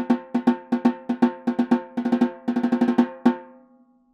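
Snare drum played with wooden sticks in a quick rhythmic pattern of louder accented strokes among softer taps, each stroke ringing briefly on the drum's pitch. It ends on a single loud stroke a little past three seconds in, whose ring fades away.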